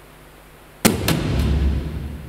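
News bulletin transition sound effect: a sudden sharp hit about a second in, a second hit just after, then a deep low boom that fades away.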